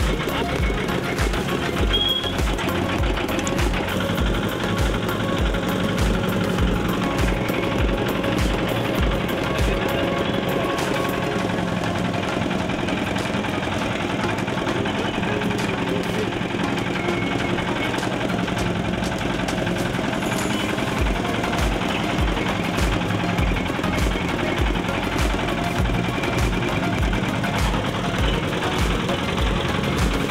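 Background music with a steady thumping beat that drops out for about ten seconds in the middle, then comes back.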